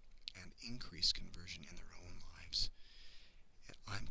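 A man talking; his words are not made out.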